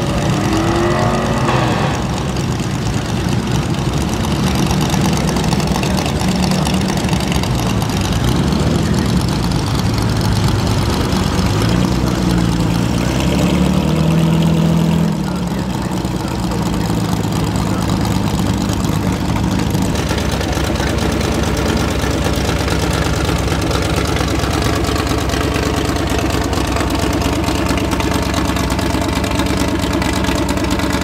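Vintage stock car engines running loudly through open side exhausts, idling with a couple of revs that rise and fall, about a second in and again around halfway through.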